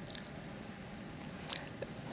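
Quiet room hiss with a few faint, short clicks, the most marked about one and a half seconds in.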